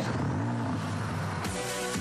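A car engine revving, mixed over music; it comes in suddenly and loudly at the start.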